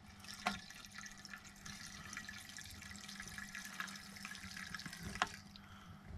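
Gasoline pouring through a flexible spout into the plastic fuel tank of a 1/5-scale RC car, a steady trickle that begins with a click about half a second in and stops with another click near the end.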